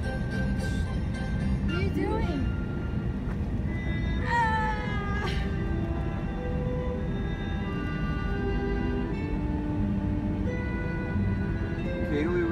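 Steady low rumble of a moving car heard from inside the cabin, with music of long held notes playing over it. A short falling, wavering voice-like cry rises out of it about four seconds in.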